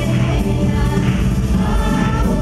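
Live pop band playing with a woman singing, a loud, dense mix with heavy bass and held vocal notes.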